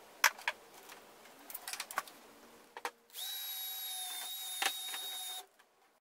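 A few light clicks and knocks of handling, then a power drill runs at a steady pitch for about two seconds near the middle, drilling into the plastic trash can lid, and stops abruptly.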